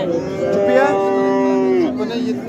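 Cattle mooing: one long, steady moo lasting nearly two seconds that drops in pitch as it ends.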